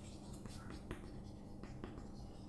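Chalk writing on a chalkboard: faint scratching strokes as a word is written out, with a few sharper taps of the chalk in the second half.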